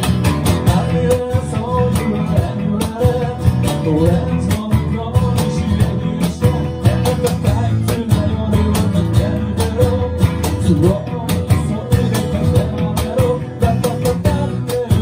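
Small live acoustic band playing: a strummed acoustic guitar, an electric bass and a cajon keep a steady beat under a man's singing voice.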